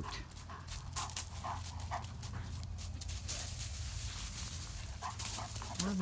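A Great Dane panting after hard play, tired out, in short irregular breaths.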